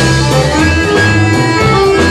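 Instrumental passage of a live rock band: a bayan (Russian button accordion) plays the melody in held, stepping notes over a steady bass line and drum kit.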